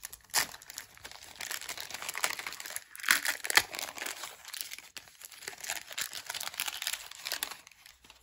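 Trading-card pack wrapper being torn open and crinkled by hand: an irregular run of crackling rustles, loudest about three seconds in, stopping shortly before the end.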